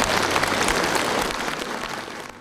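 Audience applauding, a dense patter of many hands clapping that slowly fades away near the end.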